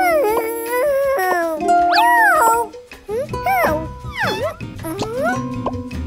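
A high, squeaky cartoon character voice making several rising and falling whines, over background music.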